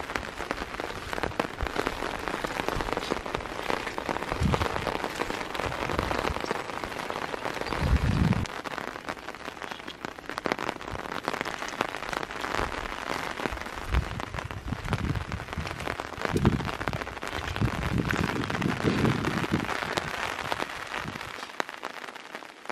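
Heavy rain falling on a muddy pond and its earth bank, a steady hiss, with a few dull low thumps now and then.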